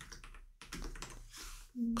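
A few key presses typed on a computer keyboard.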